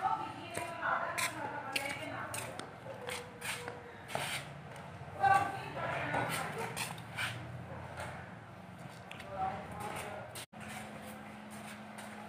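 Rustling, flapping and soft irregular knocks of a large carpet being spread out and straightened on a concrete floor.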